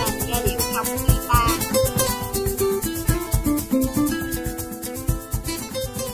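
Maracas shaken in a quick, even rhythm over an accompanying melody of pitched notes.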